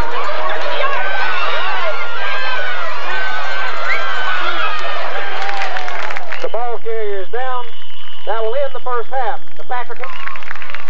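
Football crowd cheering and shouting during a play, many voices overlapping. About six seconds in the sound cuts abruptly to a few loud voices calling in short repeated phrases over a steady hum.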